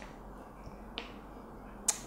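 Quiet room tone broken by two short clicks, a small one about halfway and a sharper one near the end.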